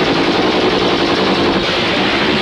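Rapid, continuous gunfire from several guns, a dense rattle of machine-gun-like shots with no break.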